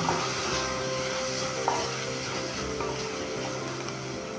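Chopped onion, green chilli and curry leaves frying in oil in a kadhai, a steady sizzle, under soft background music.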